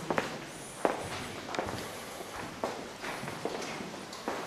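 Footsteps of people walking along a cave path, irregular steps a little more often than one a second, with light scuffing between them.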